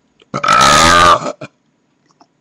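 A man making a loud, drawn-out burp-like noise right at the microphone, lasting about a second, its pitch dropping slightly near the end.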